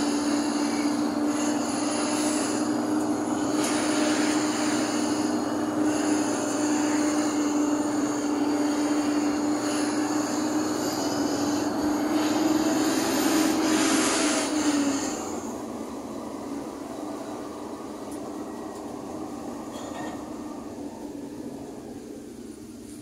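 Vehicle running along a road, heard from inside the cab: steady engine and road noise carrying a loud, steady whine. About fifteen seconds in the whine stops and the noise drops to a quieter run.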